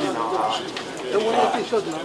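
Indistinct crowd chatter: several people talking at once in the background, with no single clear voice.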